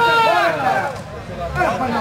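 Excited voices shouting and calling out around a beach-football match: one loud, drawn-out shout at the start, then overlapping calls and chatter.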